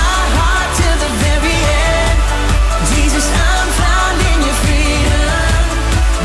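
Loud live pop-style worship band music with singing: vocals over drums and a strong, steady bass.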